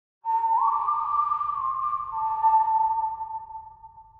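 A held, whistle-like pure tone, joined half a second in by a second, slightly higher tone that slides up into place; the pair rings steadily and then fades away over the last second or so.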